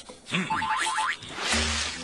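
Cartoon sound effects: a quick run of springy, rising boing-like glides, then from about three quarters in a hiss over a steady low rumble. The rumble is the sound of something approaching.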